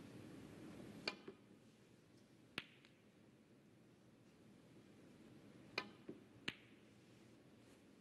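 Snooker shot: the cue tip strikes the cue ball about a second in, then hard clicks of the balls colliding follow, one at about two and a half seconds and three in quick succession near six seconds, against a hushed arena.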